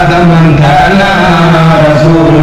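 A man's voice chanting an Arabic devotional poem, drawing each syllable out into long held notes that move slowly from pitch to pitch.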